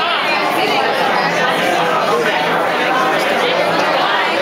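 Many people talking at once in a room: a steady hubbub of overlapping conversation, with no single voice standing out.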